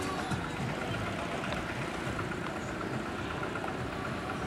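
A car engine idling steadily, with faint music in the background.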